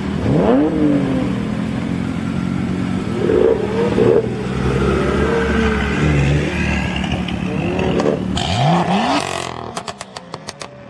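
BMW M2's turbocharged straight-six accelerating hard, revs rising sharply just after the start and again near the end. In the last half-second it gives a rapid crackle of exhaust pops.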